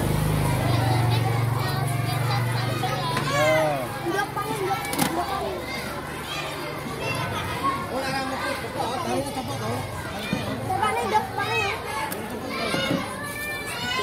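A crowd of schoolchildren chattering and calling out at once, many high voices overlapping. A low steady hum lies under the voices for the first half and fades out about seven seconds in.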